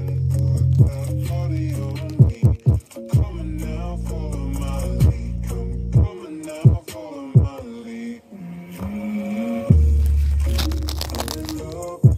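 A song with vocals played through a JBL Flip 5 portable Bluetooth speaker at full volume, its deep sustained bass notes filling the low end. The bass drops out for a few seconds past the middle and comes back loudest about ten seconds in.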